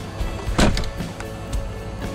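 Electric motor of a Tesla Model X's powered front door running, with a loud sharp click about half a second in. The door is being worked from the touchscreen in a check of a failing door latch.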